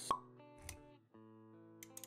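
Intro music with animation sound effects: a sharp pop just after the start, a short low thump a little later, then held music notes from about a second in.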